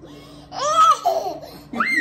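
A toddler laughing in two high-pitched bursts: one about half a second in, and a shorter one near the end that rises sharply in pitch.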